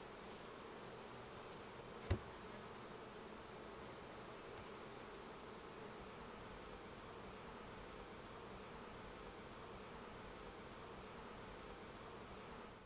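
Honeybee colony humming: the steady, dense buzz of many bees around the hives. A single sharp knock about two seconds in.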